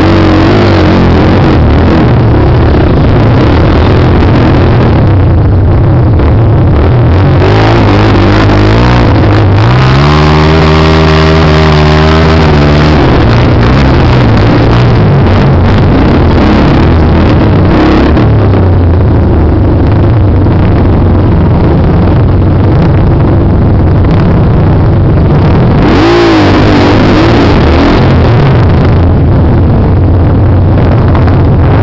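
Dirt bike engines running loud at low speed on a steep rocky climb. One engine revs up and back down about ten seconds in, and there is a shorter rev near the end.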